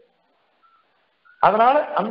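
A man's lecturing voice stops for about a second and a half, then resumes; in the pause there are two faint, brief high tones.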